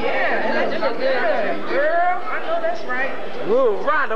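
Several people talking over one another: indistinct conversational chatter.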